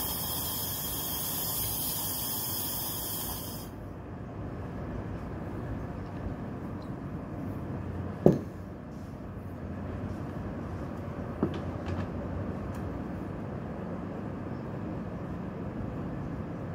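A lever espresso machine hissing loudly, the hiss cutting off abruptly about four seconds in, then a low steady rumble with a sharp metallic clink about eight seconds in and a softer click about three seconds later.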